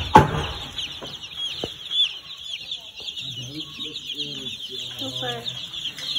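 A brood of day-old broiler chicks peeping constantly, many short falling cheeps overlapping into a continuous chorus. A low voice murmurs underneath in the second half.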